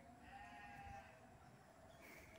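Near silence, with one faint, short animal call about half a second in.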